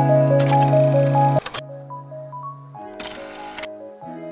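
Background music with a light melody, cut across twice by a loud hiss-like sound-effect burst, the first about half a second in and lasting about a second, the second shorter near the three-second mark. The music drops much quieter about a second and a half in.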